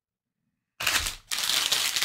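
A foil blind-bag packet crinkling as it is handled in the hands. The sound cuts in abruptly about a second in after dead silence and dips briefly just after.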